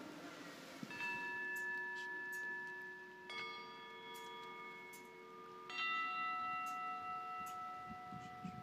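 A bell struck three times, about two and a half seconds apart, each stroke ringing on and fading slowly: the bell rung at the elevation of the consecrated host during the Mass.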